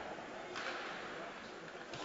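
Faint ice-rink ambience of a hockey game, a steady low hiss with no distinct strikes.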